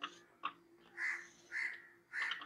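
A crow cawing, a few short harsh calls about half a second apart.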